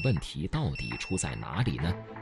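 Two high, steady electronic beeps: the first ends just after the start, the second lasts about half a second near the middle. They sound over a voice speaking Mandarin.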